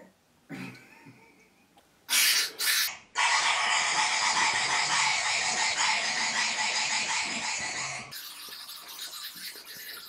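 Aerosol whipped-cream can spraying: two short spurts about two seconds in, then a steady hiss of about five seconds that stops abruptly and leaves a quieter spray.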